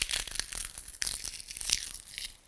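A dry brown autumn leaf being crumbled and torn between the fingers, giving a dense run of small crackles and snaps.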